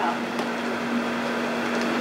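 A steady hum with one held low tone over even room noise.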